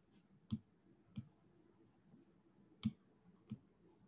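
Four light clicks of a stylus tapping on a tablet's glass screen, unevenly spaced over about three seconds.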